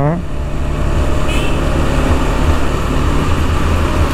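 KTM 390's single-cylinder engine running steadily under way in city traffic, mixed with wind rushing over the GoPro's microphone. A brief high chirp sounds about a second in.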